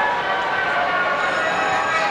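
Carousel band organ playing, several steady notes sounding together.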